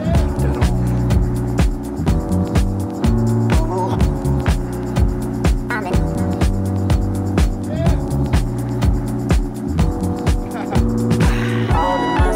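Deep, jazzy house music playing from a vinyl DJ mix: a steady, evenly repeating beat over a heavy bass line. A brighter melodic part comes in near the end.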